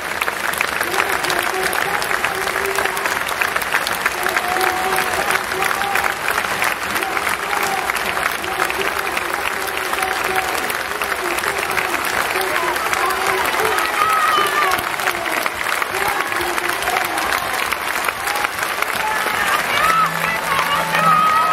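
Large crowd clapping steadily throughout, with many voices chanting together over the clapping in drawn-out, wavering tones.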